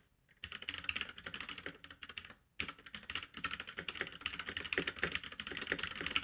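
Typing on a mechanical keyboard with brown switches: a quick, continuous run of key clacks, more clickety-clack, with a brief break near the start and another about two and a half seconds in.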